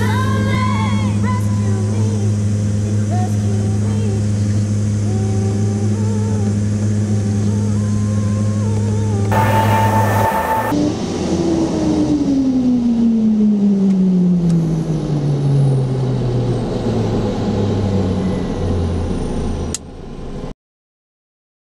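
Mitsubishi MU-2's Garrett TPE331 turboprop engines heard from inside the cockpit, a steady drone during the landing rollout, then winding down in pitch over several seconds from about halfway through. Song music fades out in the first few seconds, and a brief hiss with a tone comes just before the engines wind down.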